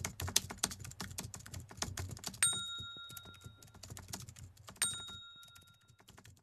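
Sound effects of an animated subscribe end screen: a fast, irregular run of clicks like keyboard typing, with two bright bell dings, one about two and a half seconds in and one near five seconds, each ringing on and fading over about a second.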